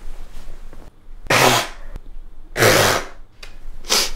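A woman blowing her nose into a tissue twice, each blow about half a second long, with a shorter sharp sniff or blow near the end.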